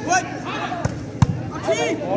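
A volleyball struck by hand in play, making sharp slaps: three within two seconds, the loudest about a second and a quarter in. Shouting voices are heard between the hits.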